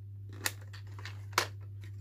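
Two sharp plastic clicks, about a second apart, from a Polaroid 1000 instant camera's film door button and latch as the film door is released and opened to take out the spent film pack.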